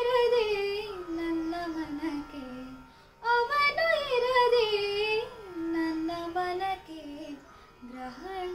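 A young woman singing a Kannada light-music (sugama sangeetha) song in two long phrases. Each phrase is ornamented and slides downward in pitch, with a brief break for breath about three seconds in.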